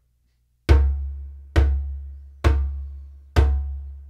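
Djembe bass strokes played with a flat palm in the centre of the head: four deep booms, evenly spaced a little under a second apart, each ringing and fading before the next.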